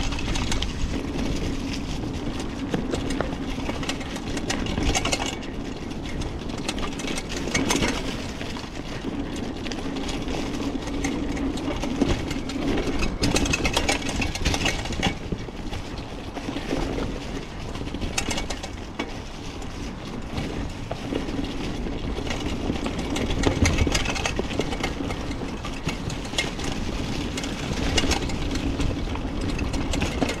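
Old 26-inch Specialized hardtail mountain bike ridden over rough, leaf-covered singletrack: the chain slaps against the frame and loose parts rattle, with frequent sharp clacks over the steady noise of the tyres rolling through dry fallen leaves.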